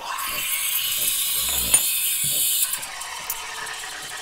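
Breville Barista Touch steam wand hissing into a stainless milk pitcher as the machine automatically steams and froths the milk, with a mechanical rattle from the machine. The hiss is loudest for the first two and a half seconds, then settles to a lower steady hiss; there is a light click near the middle.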